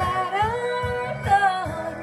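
A woman singing a pop ballad over an instrumental backing track, her voice sliding up into a long held note in the first second before moving to new notes.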